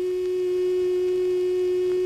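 Bulova Accutron watch's tuning fork humming: one steady, unwavering mid-pitched hum with faint higher overtones, the fork vibrating 360 times a second to keep time.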